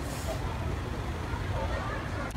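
Outdoor city street ambience: a steady low rumble with faint voices in the background.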